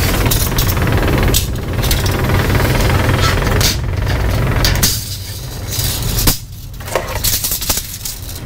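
Lift motor running with a steady low hum and some rattle as it lowers a side-by-side, the sound dropping off briefly about five and six and a half seconds in.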